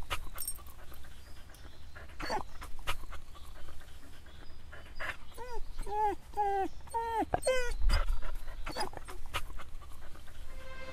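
Dog panting, then a run of about seven short whimpers in the second half, each falling in pitch.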